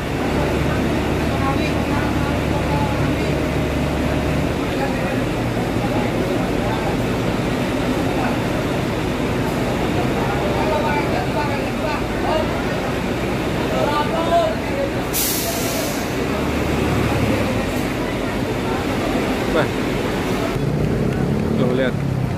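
Diesel bus engines idling at a terminal under crowd chatter, the low rumble swelling at the start and again about sixteen seconds in. A short burst of air-brake hiss about fifteen seconds in.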